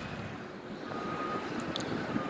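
Steady hum of distant vehicle noise, with a faint thin tone briefly about a second in.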